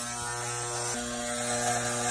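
Corded electric hair clippers running against the chin and beard with a steady, even buzz.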